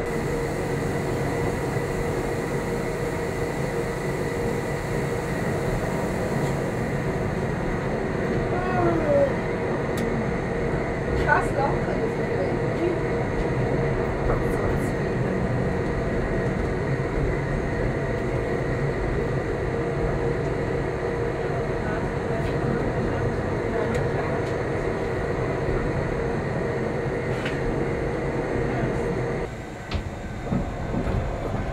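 Electric rack-railway railcar of the Gornergratbahn running downhill, heard from inside the car: steady rumbling running noise with a constant whine, and a few brief squeals about a third of the way in. Near the end the running noise drops away as the train draws to a halt in the station.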